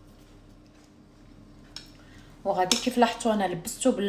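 Quiet room hum with one faint click, then a woman speaking from just past halfway.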